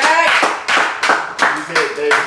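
A few people clapping unevenly, with voices responding over the claps.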